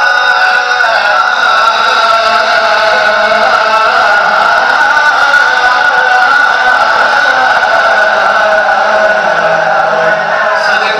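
A man singing a naat into a microphone, amplified through a loudspeaker system, in long held melodic lines.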